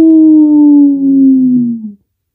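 A person's voice doing one long mock howl, "hooowl", held and slowly falling in pitch, then stopping near the end.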